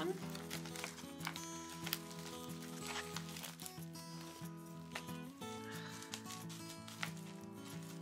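Soft background music of held chords that shift about five and a half seconds in, with a few short crinkles and clicks from a small plastic mailer packet being handled.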